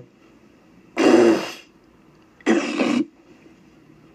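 A man hawking up phlegm from his throat: two loud, rasping hawks about a second and a half apart.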